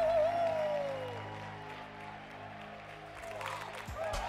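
Church band holding sustained low chords, with a wavering held note that slides down and fades about a second in, under clapping from the choir; the music grows busier near the end as the song gets under way.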